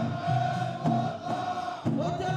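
Men's voices chanting together in long held lines over drum strokes: the group chant and drumming of a traditional Gulf ardha sword dance.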